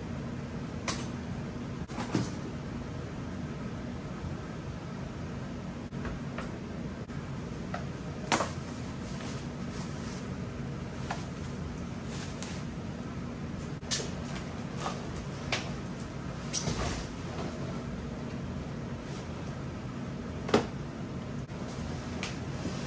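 Cardboard shipping crate and plastic packaging being handled: scattered knocks, scrapes and rustles, with a sharper knock about eight seconds in and another near the end, over a steady low hum.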